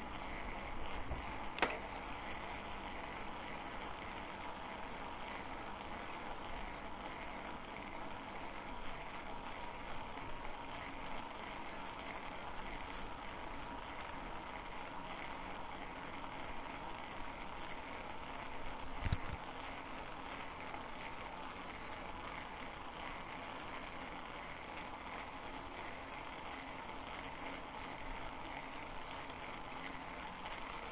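E-bike ridden uphill on asphalt under motor assist (turbo mode): steady tyre and wind noise with a faint steady whine. There is a sharp click near the start and a single low knock about two-thirds of the way through.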